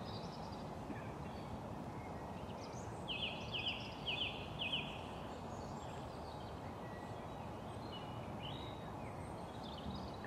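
A bird calling outdoors at dusk: a short run of about four quick, high, falling chirps a few seconds in, with a few fainter chirps elsewhere, over a steady low background hiss.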